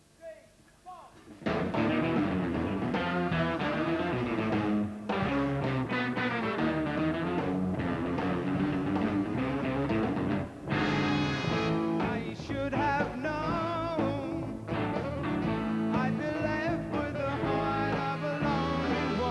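Live rock band with electric guitar coming in suddenly about a second and a half in, after a few faint sliding notes. The band plays a busy, winding instrumental riff, the one written to take the band from the key of A to A-flat.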